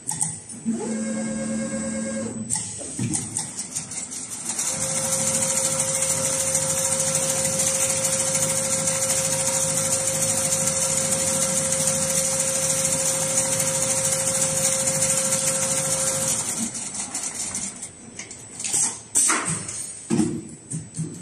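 Richpeace two-head, six-knife perforation sewing machine running. About a second in, a short motor whine rises in pitch. Then, from about four seconds, the heads run at speed for some twelve seconds with a steady whine and rapid stroking, which stops cleanly, followed by a few sharp clicks near the end.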